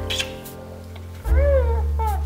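A tortoiseshell cat meows about halfway through, a short call that rises and then falls in pitch, with a second meow just starting at the end, over soft background piano music.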